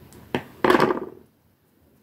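Handling noise close to the microphone. A sharp knock comes about a third of a second in, then a louder, short scuffing knock, and then the sound drops out almost completely.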